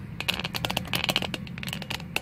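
Handling noise as the phone camera is moved: rapid, irregular clicks and rustles over a low steady hum.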